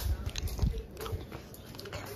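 Soft low thumps and rustling, strongest in the first second or so: the handling noise of a phone carried by hand while walking.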